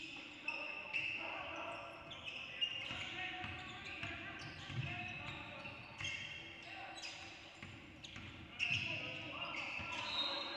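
Basketball being dribbled on a hardwood gym floor, with sharp thuds at uneven intervals and high squeaks of sneakers on the court. Players' voices call out in the echoing hall.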